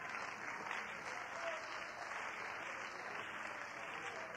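Audience applauding, an even, steady clapping throughout.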